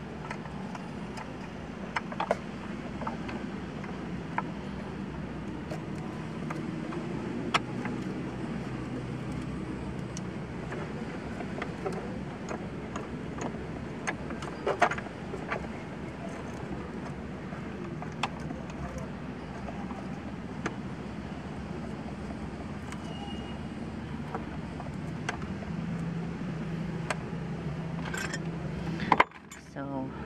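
Scattered small metal clicks and taps as a new car battery's terminal and hold-down clamp are handled and fitted into place, over a steady low background hum.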